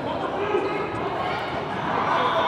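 Indistinct voices and general activity noise echoing in a large indoor sports hall, with a single faint thump about half a second in.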